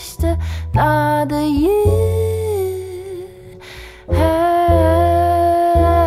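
A woman singing a slow wordless melody in long held notes over soft acoustic band accompaniment with deep sustained bass notes. The music thins to a brief lull past the middle, then swells back.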